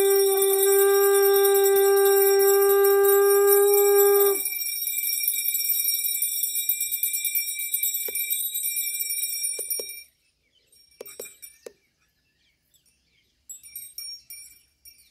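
Conch shell blown in one long steady note, sagging in pitch as it cuts off about four seconds in. A high ringing carries on until about ten seconds in, followed by a few faint clinks.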